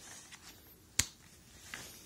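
A picture-book page being turned by hand: a faint paper rustle, then one sharp click about a second in.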